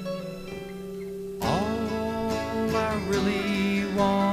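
Instrumental passage of a 1970s folk psychedelic recording: acoustic guitar strumming over sustained notes, with a louder strummed chord about a second and a half in.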